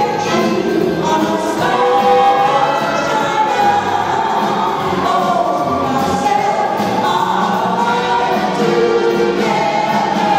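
Music: a group of voices singing together.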